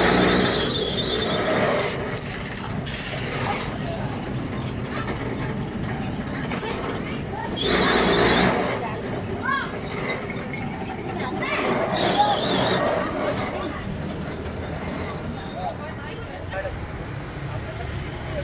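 Electric sugar cane juice press running, its steel rollers crushing a cane stalk fed through it, with louder grinding surges near the start, about eight seconds in and about twelve seconds in as the stalk is passed through again.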